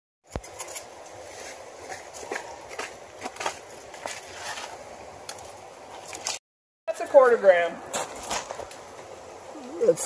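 Creek water running steadily, with scattered light clicks and knocks of stones and tools on the rock.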